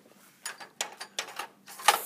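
A string of light, irregular clicks and knocks as a plastic drill-bit case is handled and picked up off a workbench.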